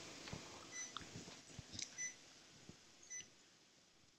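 Faint, regular beeping from a cath-lab patient monitor, a short two-tone beep about every 1.2 seconds in time with the heartbeat, over low room noise with a few faint clicks.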